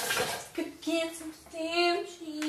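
A woman's voice singing wordlessly in a few short held, wavering notes, with a brief rush of noise at the start.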